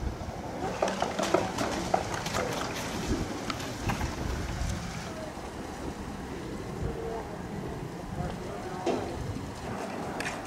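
Fireworks crackling and popping: a rapid run of sharp cracks through the first four seconds, thinning out to scattered pops after that.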